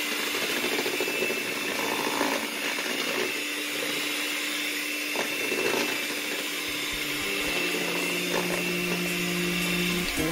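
Electric hand mixer running steadily, its beaters whipping a thick cream in a plastic bowl, with a constant motor hum.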